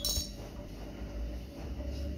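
A single short, bright clink right at the start, then a low steady hum.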